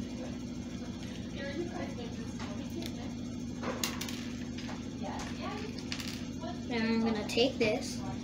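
Small plastic building bricks clicking and rattling as they are sorted and pressed together by hand, in a few sharp ticks over a steady low hum. A voice is heard briefly near the end.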